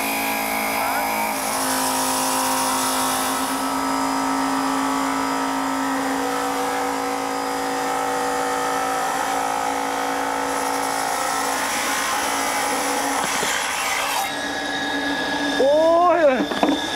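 Lapidary saw running with its blade grinding through a rough jade-bearing stone, a steady motor whine with held tones that shift a little now and then. About two seconds before the end the sound thins out, and then a man exclaims.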